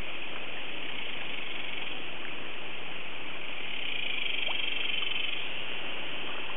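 Steady high-pitched outdoor animal chorus. It swells for a second or so past the middle, with faint scattered ticks.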